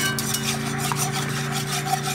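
Wire whisk scraping and stirring through milk gravy against the bottom of the pan, a continuous scratchy rasp of repeated strokes, over a steady low hum.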